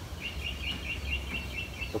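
A small bird giving a rapid series of short, even chirps at one high pitch, about seven a second, over a steady low rumble.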